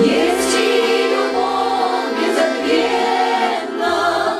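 Choir of women's voices singing a Russian popular song with accordion accompaniment, the voices coming in right at the start.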